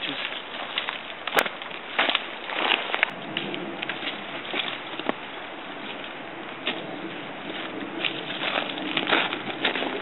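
Dry twigs and dead branches snapping and cracking irregularly as they are broken off by hand, with footsteps rustling through dry leaf litter and thin snow.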